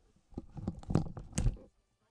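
A short run of crackling clicks and knocks, loudest near the middle and again about a second and a half in, dying away before the end.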